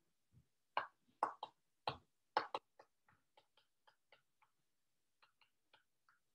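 Stylus tip tapping and clicking on an iPad's glass screen while handwriting numbers: a quick run of sharp ticks in the first three seconds, then a few fainter ones.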